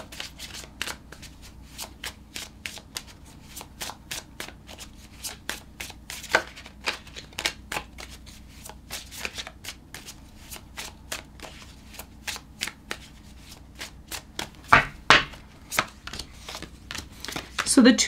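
Tarot cards being shuffled by hand in an overhand shuffle: a quick, irregular run of soft card flicks and slaps, with a few louder slaps near the end.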